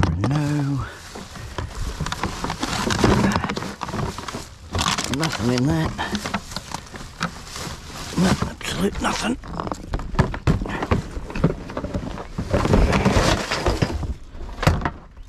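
Household trash being rummaged through by hand in a plastic bin: plastic bags and wrappers rustling and crinkling, and bottles and packaging knocking together in many short sharp bursts. A man's voice is heard briefly a few times, without clear words.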